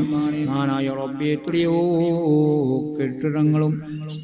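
A man's voice chanting a devotional recitation in a drawn-out melodic line, holding long notes that step up and down in pitch, with a brief break near the end.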